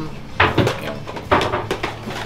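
Plastic video-tape cases clacking as they are handled: two sharp knocks about a second apart.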